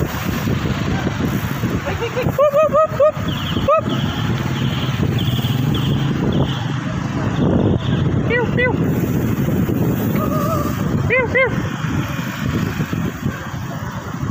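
Rushing wind and road noise from riding a bicycle along a town street among other riders and traffic. Over it come several quick bursts of short, rising-and-falling high chirps, about two seconds in, near the middle and again after eleven seconds.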